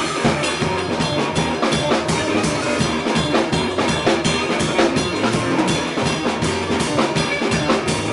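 Live rock band playing at full volume: a drum kit driving a busy beat with many quick drum and cymbal hits, under electric guitar.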